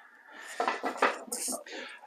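Light knocks, scrapes and rustling of clothing as a person sits down on a small wooden stool, with a brief scraping hiss in the middle.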